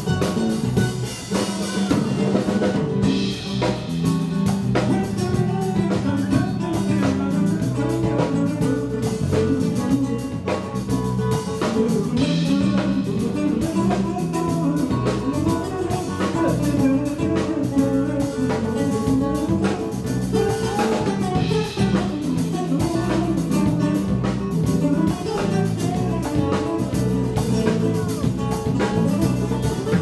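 Live Latin jazz band playing without a break: nylon-string acoustic guitars over electric bass, with congas, timbales and an unmiked drum kit with cymbals keeping a busy rhythm.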